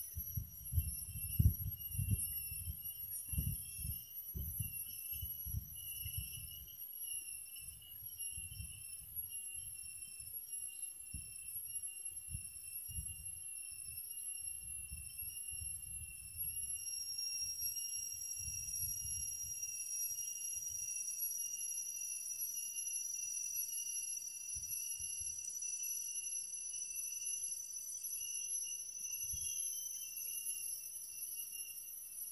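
Insects calling with a steady, high-pitched ringing drone, and a second, slightly higher tone joining about halfway through. Low rumbling sits beneath it, heaviest in the first several seconds.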